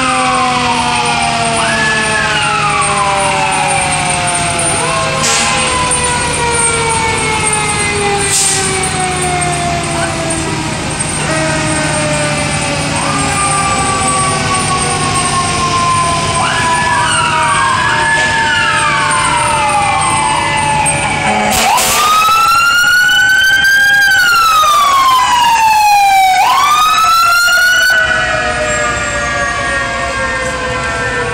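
Several fire truck sirens wailing at once, their pitch repeatedly winding up and sliding down, with passing fire engines running underneath. About three-quarters of the way through, one siren close by becomes much louder, rising, falling and rising again before cutting off.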